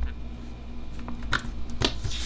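Hands handling paper stickers on a planner page: a few light, short taps and paper clicks over a low steady hum.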